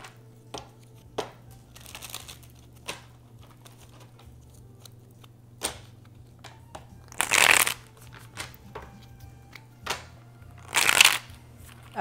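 A tarot deck being shuffled by hand, with soft card taps and clicks. There are two louder rushes of cards a little past halfway and near the end.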